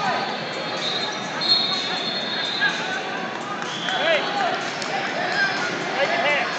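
Echoing ambience of a busy wrestling tournament hall: many voices of coaches and spectators calling out across the room, with a steady high tone lasting about a second near the start.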